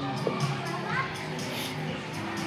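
Children's voices in a play hall over background music with a steady beat; a child's voice rises briefly about a second in.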